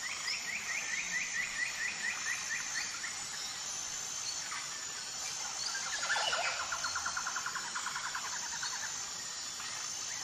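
Birds trilling: a fast trill of rapid repeated notes in the first three seconds, then a lower trill starting about six seconds in and lasting about three seconds, over faint, steady, high-pitched chirping.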